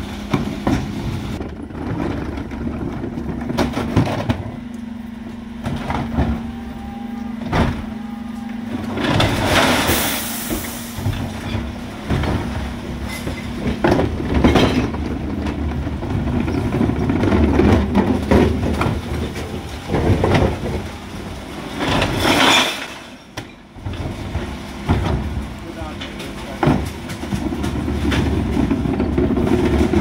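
Dennis Elite 6 refuse truck at work, its engine running under the Terberg electric bin lift tipping black wheelie bins of glass, tins and plastic into the hopper. Repeated knocks and clatter come from the bins and their contents, with a steady hum early on and two louder rushing bursts, one about a third of the way in and one about three quarters through.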